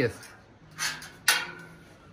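A steel scriber scratching a short line across a square steel tube, drawn along a steel square, then a sharp metallic click a moment later.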